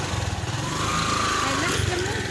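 Small motorcycle engine running with a steady rapid low pulse, heard from on board the moving bike.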